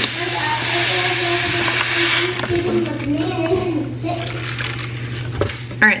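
Dry quinoa grains poured from a bag into a glass measuring cup: a steady granular hiss that is strongest for the first two seconds or so, then thins out and trails off as the pour ends.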